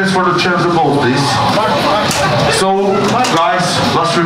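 A man's voice talking through the microphone and club PA, the words unclear, with a rising vocal sweep about three seconds in.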